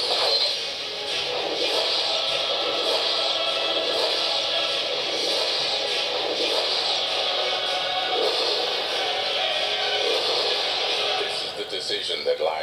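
Trailer soundtrack of music mixed with film sound and some speech, from a Blu-ray promotional reel playing on a portable DVD player's small built-in speaker.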